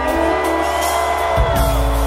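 Live reggae-rock band music: a long held chord with sustained notes, the bass dropping back and then coming in strongly again about one and a half seconds in.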